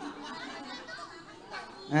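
Low background chatter of many people talking in a large hall.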